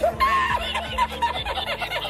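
A man laughing uncontrollably in quick repeated bursts: the laugh from the 'Spanish laughing guy' meme clip, with background music underneath.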